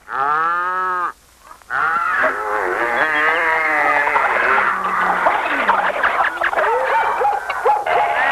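Several people's voices calling out over one another, as a jeering crowd mocking someone. It opens with one long drawn-out call that rises and falls in pitch. After a short pause a dense, overlapping babble of calls runs to the end.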